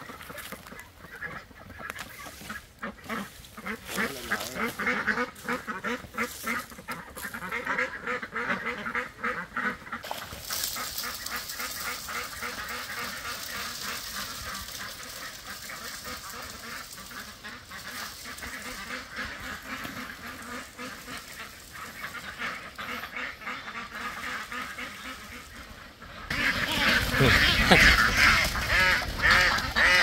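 A flock of white domestic ducks quacking in rapid, overlapping calls, thinning out through the middle. Near the end comes a louder burst of wing-flapping and calls as one duck is caught and held.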